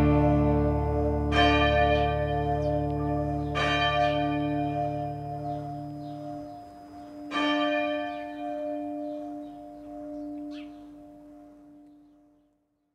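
Closing of a song: bell tones ringing out over a low held note, struck anew three times, the whole slowly fading away.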